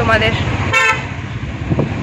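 A vehicle horn honks once, briefly, a little under a second in, over the steady low rumble of road noise inside a moving car.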